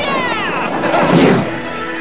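Cartoon soundtrack: two short, high, falling cries that PANN reads as meow-like, then music settling into held chords about halfway through.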